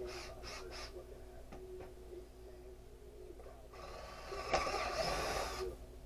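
Cordless drill running for about two seconds, boring into a piece of wood, starting a little past halfway and stopping just before the end. A few short rustles come in the first second.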